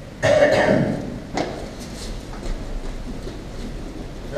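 A short, loud cough-like burst from a person's voice, followed by a single sharp knock about a second and a half in, then faint scattered scuffs of movement on the training mats.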